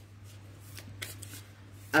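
Tarot cards being handled at a table: a few soft shuffling rustles over a steady low electrical hum.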